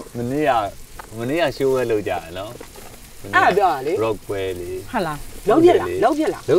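Conversation in Burmese, with food sizzling on a tabletop grill pan underneath the voices.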